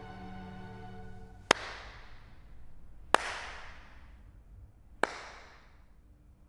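Slow single handclaps: three sharp claps roughly one and a half to two seconds apart, each followed by a ringing echo, a slow mocking clap. A held music chord fades out as the clapping begins.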